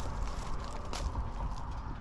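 A few faint slaps of sandal footsteps over steady outdoor background noise with a low rumble.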